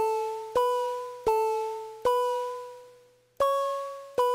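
A fuzzy, slightly creepy piano-like synth patch in Reason, called Source Tri-Noise, plays a slow single-note melody on its own. Each note is struck and then fades away, alternating between two close pitches, with a higher note after a pause near the end.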